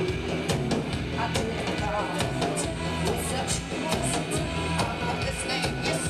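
Live rock band playing a song, with drums hitting a regular beat under guitar and other instruments.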